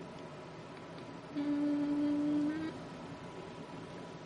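A woman humming a single steady note for just over a second, stepping up slightly in pitch at the end, over faint room hiss.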